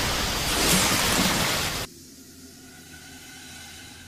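Anime sound effect of a huge fire blast: a loud, even rushing roar that cuts off abruptly about two seconds in, leaving only faint sustained music tones.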